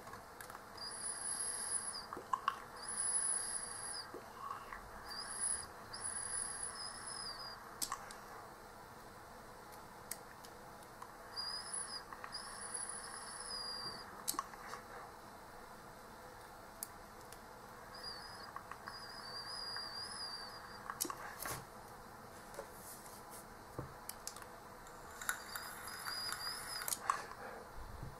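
Draws on a homemade box-mod e-cigarette: a faint thin high whistle over light hiss sounds during each of about five drags, with quieter pauses between them.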